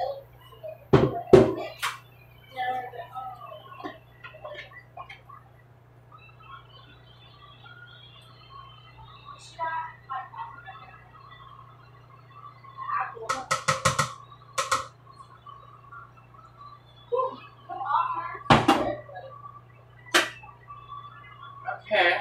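Kitchen clatter while macaroni is drained: scattered knocks and clanks of pots and dishes, with a quick metallic rattle about two-thirds of the way in, over a steady low hum.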